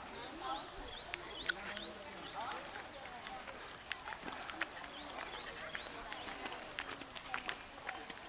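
Faint, indistinct voices of people with small birds chirping now and then, and scattered light clicks.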